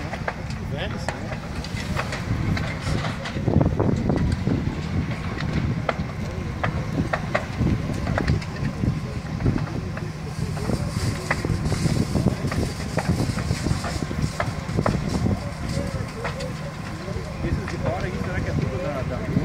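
A building fire burning through its roof, with frequent short, sharp crackles and pops over a steady low rumble. Indistinct voices of onlookers are mixed in.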